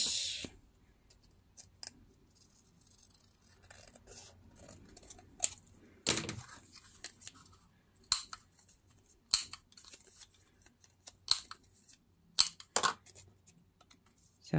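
Handheld corner rounder punch snapping through the corners of a paper label, several sharp clicks from about six seconds in, with quiet paper handling before them.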